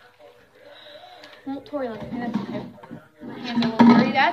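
Voices talking, not made out as words, loudest in the second half. Before that, near the start, there is faint rustling as a disposable plastic food-prep glove is pulled off a hand.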